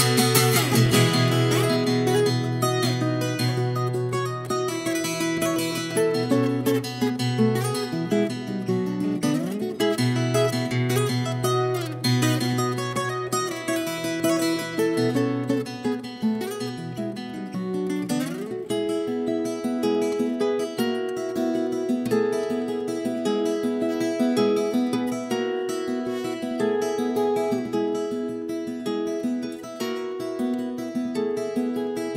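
Viola caipira, the ten-string Brazilian folk guitar, played fingerstyle: a plucked melody over ringing low notes, with a couple of sliding notes.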